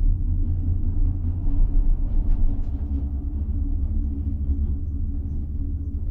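Steady low rumble of a monocable gondola cabin running on the haul rope as it passes a lift tower, the rope and cabin grip rolling over the tower's sheaves; it swells slightly about two seconds in.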